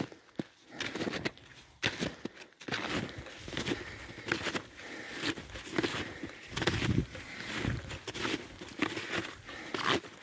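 Snowshoes crunching in deep snow, step after step at a walking pace.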